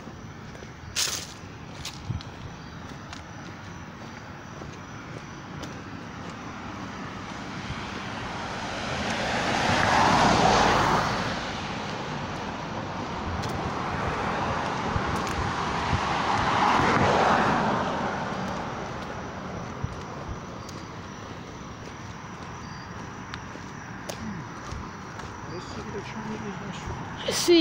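Road traffic passing close by: two vehicles go past one after another, each a swell of tyre and engine noise that rises and fades, the first peaking about ten seconds in and the second around seventeen seconds, over a steady hum of more distant traffic.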